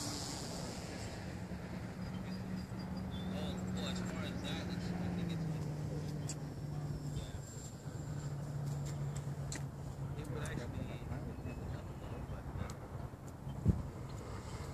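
Radio-controlled model plane flying high overhead, its motor and propeller a steady distant hum that drops a little in pitch about five seconds in, with faint clicks and one sharp knock near the end.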